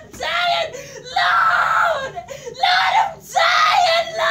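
A woman screaming and wailing in about four long, high-pitched cries, each under a second, with short breaks between them.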